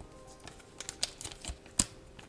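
Thin clear plastic filter bag crinkling and crackling in the hands: a quick series of sharp crackles in the second half, the loudest near the end, over faint background music.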